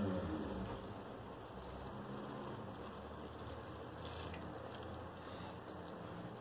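Faint, steady bubbling of broth simmering over rice in a pot.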